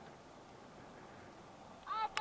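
Steady rush of airflow over the camera microphone during a paragliding flight. Near the end, a short high-pitched voice-like cry begins.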